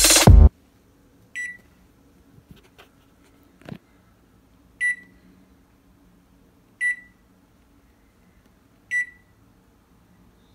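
A KitchenAid oven's electronic control panel beeping as its touch pads are pressed to key in the bake temperature: four short high beeps a few seconds apart, the first one quieter, with a few faint taps between. Music cuts off about half a second in.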